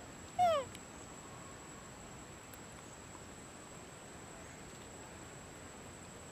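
A macaque gives one short, loud call that falls in pitch, about half a second in; after it only a steady low hiss remains.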